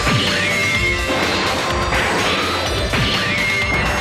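Anime action-scene audio: soundtrack music with crashing impact sound effects, and a falling, whistling sweep near the start and again about three seconds in.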